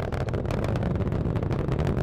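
Falcon 9 rocket with its nine Merlin engines running in ascent: a steady, dense rumble full of fine crackle. The first stage is throttled down to pass through max Q.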